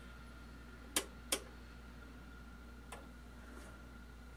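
Detented rotary time-base switch on a vintage Tektronix oscilloscope plug-in clicking as it is turned: two clicks close together about a second in and a third near three seconds. A faint steady hum and a faint high tone run underneath.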